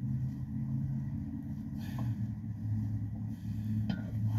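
A steady low hum and rumble, with a faint click about halfway through.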